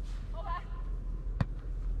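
A volleyball hit once by a player during a rally, a single sharp slap about one and a half seconds in. A brief faint voice calls out shortly before it.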